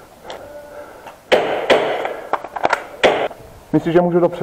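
Airsoft Glock pistol firing a string of sharp shots that echo in a small room, with a quick run of lighter clicks in the middle.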